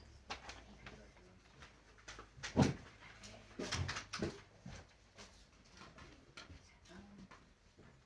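Faint scattered knocks and clicks, the loudest a thump about two and a half seconds in, over a low steady hum.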